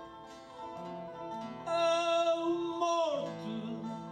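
Male voice singing a Portuguese cantoria verse over plucked guitar accompaniment. The guitars play alone at first; about a second and a half in, the voice comes in on a long, wavering held note that falls away just before the end.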